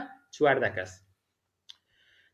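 A man's voice speaking a short phrase in the first second, then quiet broken by one short, faint click.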